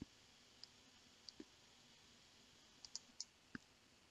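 Near silence broken by a handful of faint, scattered computer mouse clicks.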